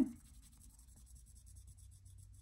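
Felt-tip marker scribbling faintly on paper, colouring in squares on a printed savings chart.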